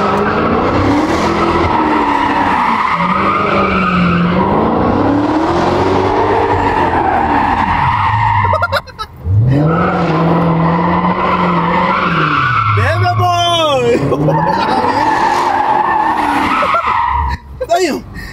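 Dodge Charger Hellcat V8 revving hard and falling back over and over while its rear tyres spin and squeal through burnouts and donuts. The engine note swells and drops about every three seconds, with a brief break about nine seconds in and a sharp tyre squeal near fourteen seconds.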